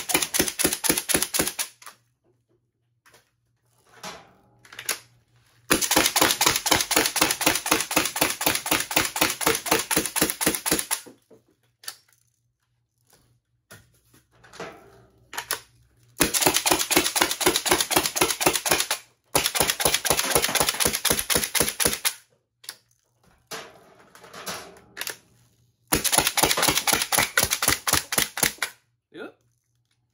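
Home-built compressed-air (HPA, 100 psi) Nerf blaster firing full auto: bursts of rapid, evenly spaced shots, each lasting from about one to five seconds. Five bursts in all, the longest about a quarter of the way in, with short stretches of quieter handling noise between them.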